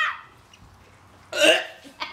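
A person's single short, sharp vocal outburst about a second and a half in, after a laugh trails off at the start.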